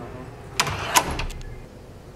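A door's metal lever handle and latch being worked as the door opens: a short rattle with a sharp click about halfway through, then a couple of small clicks.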